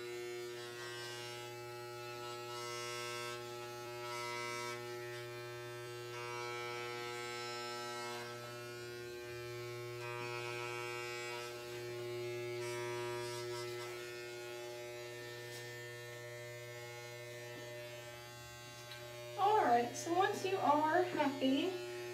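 Corded electric hair clippers with a guard attached, humming steadily as they cut hair at the back and sides of the head. The level swells slightly now and then.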